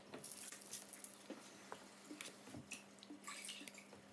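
Faint, scattered small ticks and taps as olive oil is drizzled from a bottle over spiced potato wedges on baking paper, over a low steady hum.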